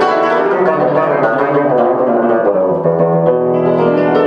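Concert cimbalom played with soft hammers in Hungarian style: a quick flow of struck string notes ringing over one another, in a piano-like sound, with a low bass note changing near the end.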